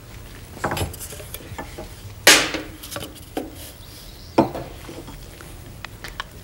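A handful of knocks and clatters of hard objects being handled and set down on a tabletop while a pop-gun target tube is set up: about four separate knocks, the loudest about two seconds in with a short ring after it.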